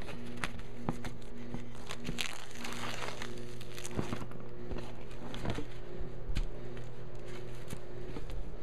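Clear plastic wrap on a new stretched canvas crinkling as it is handled, in scattered sharp crackles that bunch together a couple of seconds in, over a steady low background tone.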